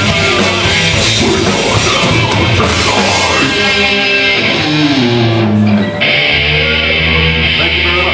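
Heavy metal band playing live with distorted electric guitars, bass and drums. A few seconds in the drums and cymbals drop out, the guitars play a falling line, then hold a ringing chord.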